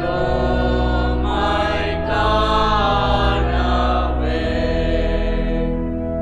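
Choir singing a slow Tamil hymn, moving to a new held note about once a second, over sustained organ chords.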